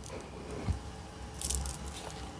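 Tarot cards being handled on a cloth-covered table: faint rustling, with a small tick and then a brief, brisker rustle about one and a half seconds in.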